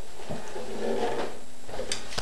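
Handling noise: a soft knock about a third of a second in and faint rustling, then a sharp click just before the end.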